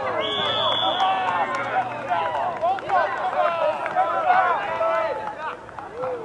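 Several players calling and shouting to each other across a soccer pitch, voices overlapping. Near the start there is one short, steady, high whistle blast, typical of a referee's whistle.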